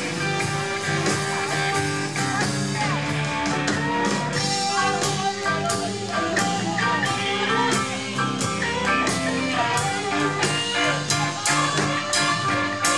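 Live blues-rock band playing an instrumental passage: electric guitar lines over a steady drum beat with cymbal hits.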